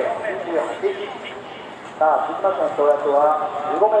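A public-address announcer speaking over the stadium loudspeakers, reading out a field-event result, with a pause of about a second near the middle.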